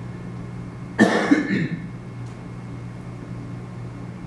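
A single harsh cough about a second in, over a steady low room hum.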